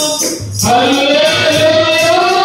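Men singing a Telugu Christian worship song into microphones over percussion, with a short break between sung phrases about half a second in.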